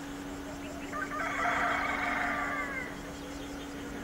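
A rooster crowing once, starting about a second in and lasting nearly two seconds, its pitch falling away at the end.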